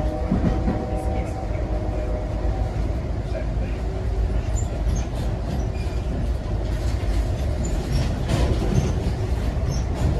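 Amtrak Southwest Chief passenger train running along the track, heard from inside the coach: a steady low rumble of wheels on rail with faint scattered clicks.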